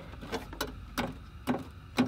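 A few light, separate clicks and knocks, about five in two seconds, as a cut-out piece of car-body sheet metal is worked loose by hand.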